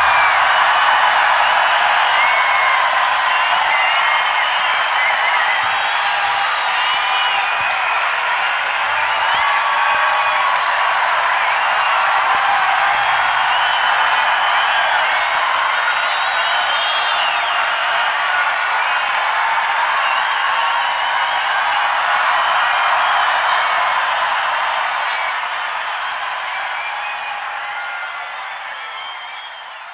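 A huge open-air concert crowd cheering, screaming and applauding at the end of a song, a dense wall of many voices with scattered high shouts. It slowly dies down over the last few seconds.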